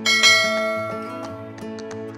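A bell-chime sound effect rings once and slowly fades, over background music.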